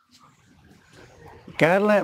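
A short pause with only faint background sound, then a man's voice resumes about one and a half seconds in with a drawn-out vowel that carries on into speech.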